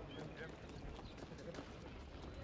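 Faint outdoor ambience of indistinct voices with scattered light taps, and a short bird chirp near the start.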